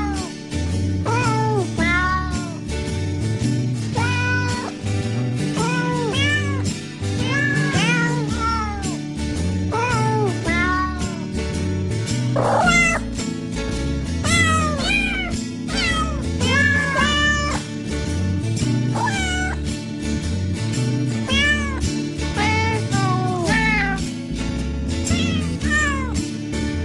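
Recorded cat meows pitched to the notes of a Christmas tune, one meow per note, sung over an instrumental backing track with a steady repeating bass line.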